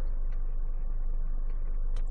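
Steady low hum inside the car's cabin from the Renault Megane's 2-litre four-cylinder petrol engine idling.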